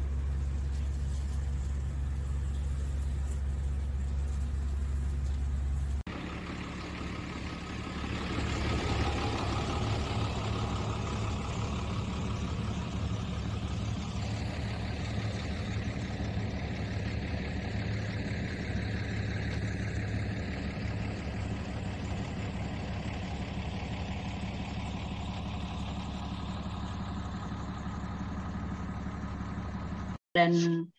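Steady low rumble of an engine running, which changes abruptly about six seconds in to a slightly quieter, steady hum.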